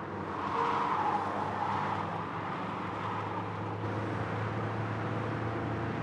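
A car driving, heard from inside the cabin: a steady low engine hum under even road noise, briefly louder about a second in.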